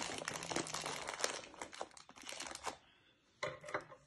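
Plastic food packet crinkling as it is handled, a dense crackle that thins out after about two and a half seconds.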